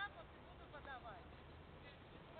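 A tennis racket striking the ball once, sharply, right at the start, followed by faint, distant voices.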